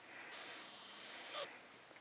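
A plush dog toy gives one short squeak about one and a half seconds in, as the puppy grabs it, over faint shuffling on the carpet.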